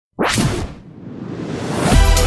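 Logo-intro whoosh sound effect: a sudden swish with a hit just after the start that fades out, then a rising swell that builds into the intro music.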